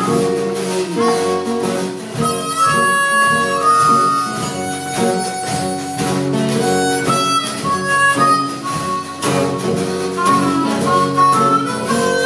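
A blues harmonica plays a solo of held and bending notes over a strummed acoustic guitar, with a steady hand-drum beat underneath.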